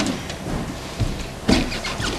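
Scattered knocks and thuds of movement on a stage, the loudest about one and a half seconds in, over a steady low rumble.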